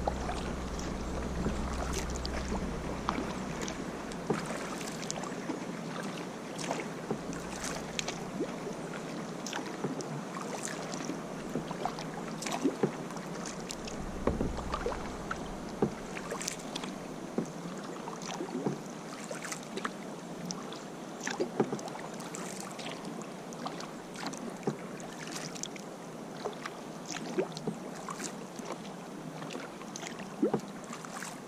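Kayak paddle strokes: the blades dip and splash in the water and drip, with water washing along the hull, heard as a steady wash dotted with many small, irregular splashes. A low wind rumble on the microphone fades out over the first several seconds.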